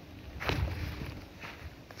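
A person's footsteps on grass, with one louder step about half a second in, over a low rumble.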